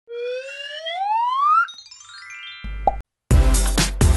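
Cartoon-style intro sound effects: a whistle-like tone gliding upward, then a quick run of rising notes and a short plop, a brief silence, and electronic dance music with a strong beat starting near the end.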